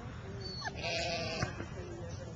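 A sheep bleating once, a wavering call about half a second long, about a second in.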